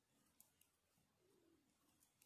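Near silence: two tiny clicks of metal knitting needles during purl knitting, with a faint low wavering sound in the background about a second in.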